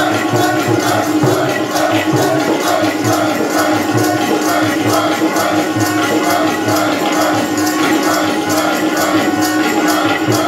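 Sikh kirtan: a harmonium holding a steady drone under a chanted devotional melody sung by a group, with tabla keeping a steady beat.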